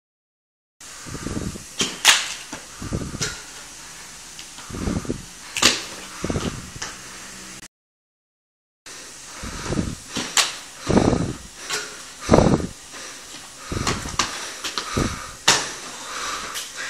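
Irregular thuds and sharp scuffs of sneakers on a tiled floor as a person practises parkour moves, recorded on a phone microphone. The sound drops out to dead silence twice, briefly, where the recording is cut.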